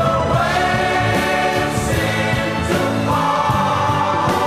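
A 1970 pop single playing: voices singing long held notes over the band, moving up to higher notes about three seconds in.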